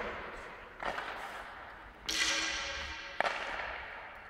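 Ice hockey shooting practice in an indoor rink: three sharp cracks of a stick striking a puck, the loudest about two seconds in and followed by a ringing tone that fades over about a second, with the rink's echo behind them.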